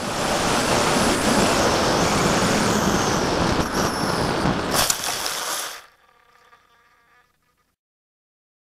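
Electric motor and propeller of an FX-61 Phantom flying wing whining high over heavy wind rush on its on-board camera microphone as it flies low. A brief sharp crackle comes about five seconds in, and the sound cuts off abruptly just before six seconds.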